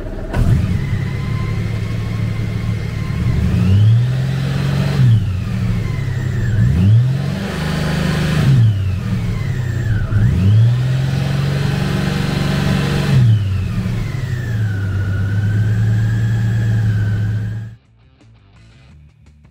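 Honda Goldwing's 1833 cc six-cylinder engine starting up and idling, then revved four times in neutral, two of them held for a couple of seconds, before settling back to a steady idle. The sound cuts off suddenly near the end.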